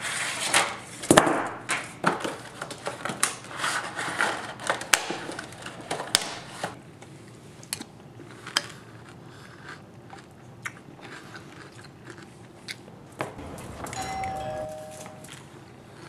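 Aluminium foil crinkling and crackling as a box is handled over it, then sparser clicks and chewing as someone eats from a spoon. Near the end comes a faint two-note falling doorbell chime.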